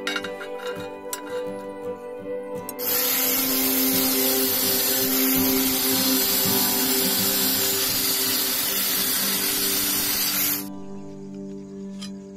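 Angle grinder with a cutting disc cutting through a steel flat bar clamped in a vise. The loud, steady cutting noise starts about three seconds in and stops suddenly about eight seconds later.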